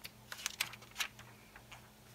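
A book page being turned by hand: several quick, light paper flicks and rustles in the first second, then one more faint one near the end.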